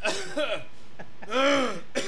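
A man clearing his throat and coughing while laughing, with one loud drawn-out voiced sound about a second and a half in that rises and falls in pitch.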